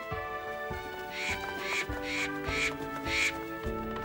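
Cartoon background music with a steady melody. In the middle come five short, rasping percussive accents about half a second apart.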